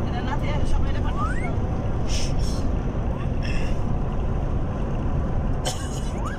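Steady road and engine rumble inside a car's cabin while it drives at highway speed, with brief faint voices over it.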